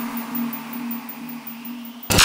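Tail of a radio station's ident jingle: a single held low synth tone over a faint hiss, slowly fading away.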